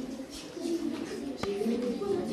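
Voices in a classroom, with speech going on throughout, and one sharp click about one and a half seconds in.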